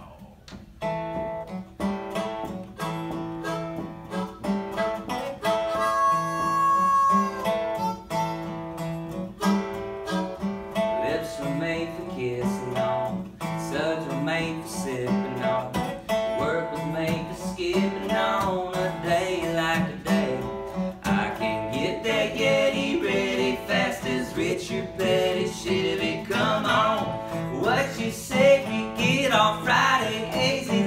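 Acoustic duo playing a country song: a strummed acoustic guitar and a resonator guitar, with a harmonica carrying the melody in long held notes over the opening bars. A man's singing voice comes in around the middle.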